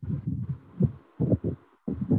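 Muffled, irregular low thumps over a faint hiss, picked up by a phone's microphone on a video call.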